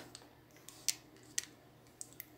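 Fingers working through dry, freshly blow-dried hair close to the microphone: faint rustling with a handful of sharp little crackling clicks, the loudest just before the middle.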